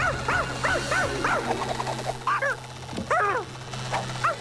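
Cartoon small dog barking in quick, high yips: a rapid run of about eight in the first two seconds, then a few more after a short pause, over background music.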